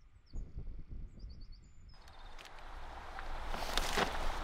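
Small bird calling in short groups of quick, high chirps over a quiet open-air background, with a few soft low thumps. About halfway through, a broad rushing noise takes over and grows steadily louder.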